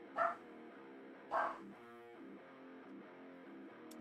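A dog barking twice, short barks about a second apart near the start, over steady background guitar music.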